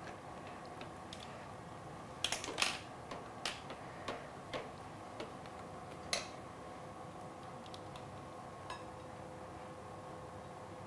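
Light clicks and clinks of plastic food-processor parts and a spoon being handled, a small cluster about two seconds in and then single ones every second or so, over a faint steady hum.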